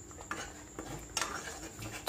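Steel spoon stirring thick spinach purée in a nonstick kadai: quiet, scattered scrapes and soft clicks of the spoon against the pan.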